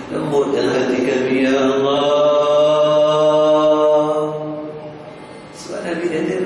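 A man chanting a religious recitation into a microphone. He holds one long, steady melodic note for about four seconds, lets it fade, and starts a new phrase just before the end.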